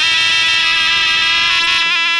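Folk shawm (zurla) holding one long, steady, piercing note, with small pitch ornaments near the end.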